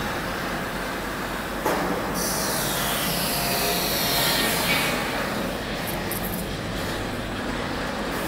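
Chain-driven flange roll forming line running with a steady mechanical noise and low hum. A hiss sweeps downward in pitch through the middle.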